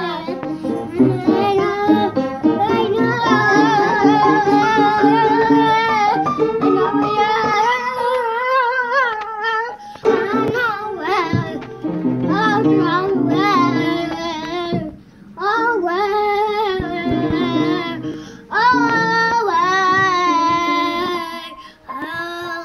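Young children playing notes on an upright piano while singing along in high, wavering voices, with brief pauses about two-thirds of the way through.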